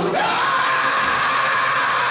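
A man's amplified voice holding one long, high sung shout in gospel style, over accompanying music.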